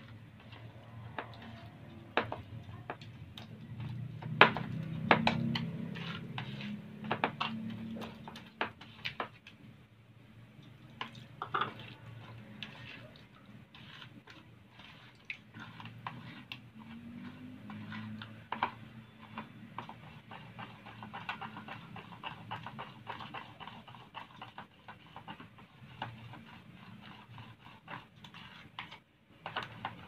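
A spoon stirring flour in a plastic bowl, with irregular clicks and taps of the spoon against the bowl. They come thickest and loudest in the first third, over a low steady background hum.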